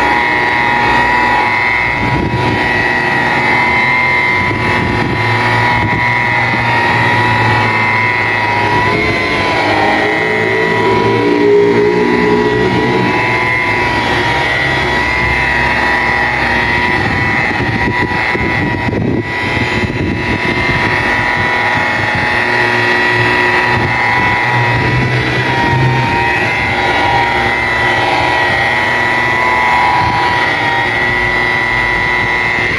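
DeWalt rotary polisher running steadily with its pad pressed on a car's paint: a steady motor whine that wavers slightly in pitch now and then.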